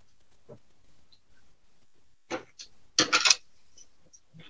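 Wooden coloured pencils clicking against each other and a hard surface as one is set down and others are picked up: a few light clicks, then a short, louder rattle about three seconds in.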